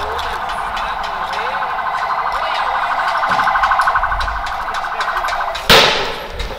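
A rapidly pulsing electronic siren tone, steady in pitch, sounding without a break until a single loud, sharp bang near the end.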